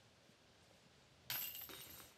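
A putted disc hits the chains of a DGA Mach X disc golf basket about halfway through: a sudden metallic chain rattle that fades away within about a second, the sound of a putt going in.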